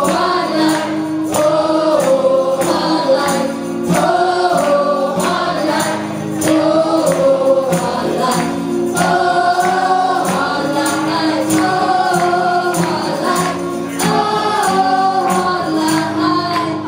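Live acoustic band: two women singing together over strummed acoustic guitars, with a hand tambourine struck in a steady beat.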